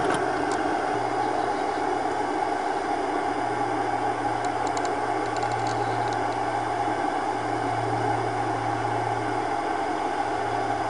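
Gas-fired model steam boiler and Stuart Score steam engine running: a steady rushing noise with a low hum that swells and fades in stretches.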